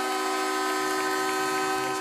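Arena goal horn sounding one long, steady chord of several notes, signalling a home-team goal.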